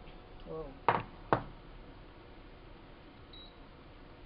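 Two sharp knocks about half a second apart, then quiet room tone.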